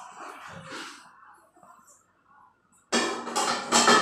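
A person bursts into loud laughter about three seconds in, after faint, uneven sounds and a short hush.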